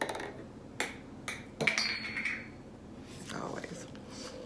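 A few short, sharp clicks and mouth noises as a plastic bottle of cranberry juice is handled and drunk from.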